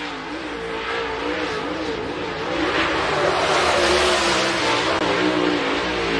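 Dirt super late model race car engine running hard on a qualifying lap, its pitch rising and falling with the throttle through the turns, growing louder about halfway through as the car comes nearer.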